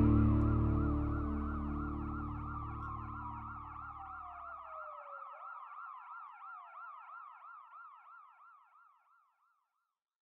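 An emergency-vehicle siren warbling rapidly up and down, with a second siren tone sliding downward in the first few seconds. It fades away about nine seconds in. Underneath, the song's last sustained chord fades out by about five seconds.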